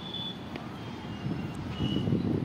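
Outdoor background noise: a steady low rumble, with faint high-pitched tones sounding on and off.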